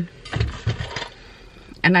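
Car engine starting: a short low rumble with two pulses about half a second in, then settling.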